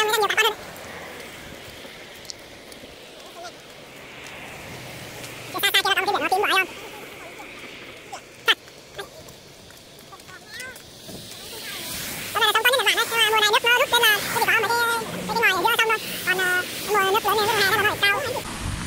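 People's voices talking in three short stretches, the longest near the end, over a faint steady outdoor background, with a single sharp click about halfway through.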